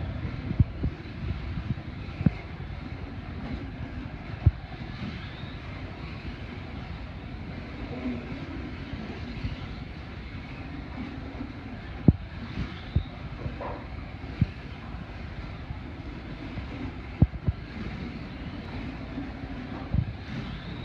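Slot cars racing around a multi-lane routed track: a steady whir of small electric motors and tyres on the track, with sharp clicks and knocks now and then.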